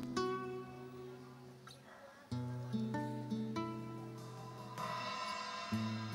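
Soft flamenco guitar music: single plucked notes over held low bass notes that change about every three seconds.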